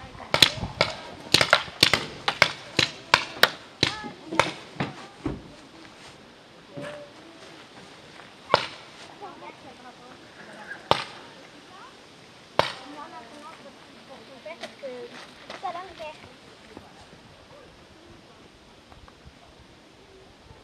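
Paintball markers firing: a quick string of sharp pops, about three a second, over the first five seconds, then single shots every few seconds. Faint distant shouting in between.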